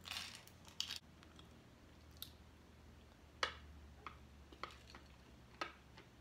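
Small candy package being handled: a short crinkle at the start, then a few scattered sharp clicks, the loudest about halfway through.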